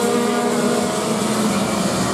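Several racing go-kart engines running at speed as the karts pass along the straight, making a steady drone of overlapping pitches.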